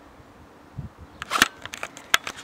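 Handheld camera handling noise: a faint low bump, then a quick cluster of clicks and knocks on the microphone in the second half as the camera is swung away.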